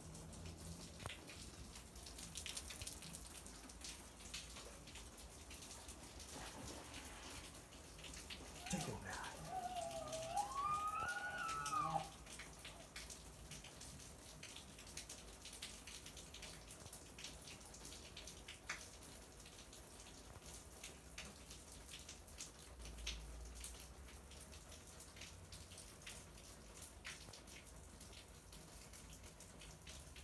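An elk gives one high whistling call about nine seconds in, starting low, rising and then falling, about three seconds long. Around it is faint water splashing from elk wading in a pond.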